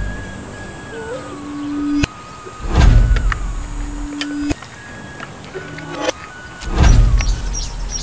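Edited-in electronic sound effects: held synthesized tones that step in pitch, with low rumbling surges about three seconds and seven seconds in, and scattered sharp clicks.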